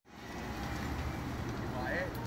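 City street ambience: a steady traffic rumble with faint voices of people nearby. It fades in at the start.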